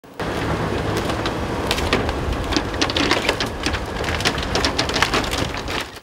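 Wheeled hydraulic excavator tearing down a wooden house: timber cracking and splintering in many sharp snaps and debris clattering down, over the steady low rumble of the excavator's engine. The snapping grows denser after the first couple of seconds.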